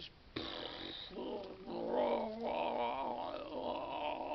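A man's wordless, drawn-out vocal exclamation. It starts about half a second in and runs on without a break, with a wavering pitch.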